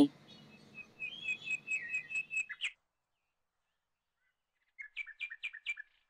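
Bird chirping, likely an added sound effect: a quick run of high chirps lasting under two seconds, a pause of about two seconds, then a second short run of about five chirps near the end.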